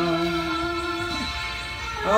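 Chanted liturgical singing before the Gospel: a long held sung note that slides down and fades out a little past the middle.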